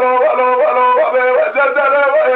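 Dengbêj singing: a solo male voice in the Kurdish bardic style, holding long notes that waver and break into quick ornamented turns.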